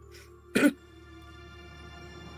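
A woman clears her throat once, a short sharp burst about half a second in, over steady background music.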